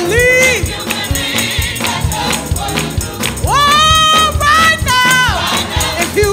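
Gospel choir singing an up-tempo song with band accompaniment, hand clapping and a tambourine keeping a steady beat. The voices hold one long note about halfway through.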